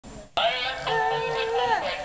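Animated plush frog toy starting its song: a recorded singing voice over music, with held notes that slide down in pitch. It starts suddenly with a click about a third of a second in.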